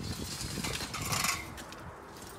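Footsteps walking on a wet, gritty concrete yard, with a brief scuffing rustle about a second in.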